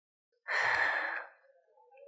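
A woman's sigh: one breathy exhalation lasting under a second, starting about half a second in, trailing off into a faint hum.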